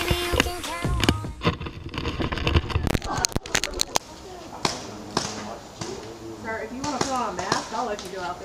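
Scattered sharp clicks and knocks, with a quick cluster about three seconds in, and indistinct voices of people talking in the background over the last couple of seconds.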